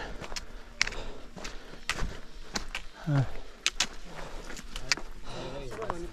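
Footsteps on a stony mountain path: irregular sharp clicks and scuffs of shoes striking loose rock.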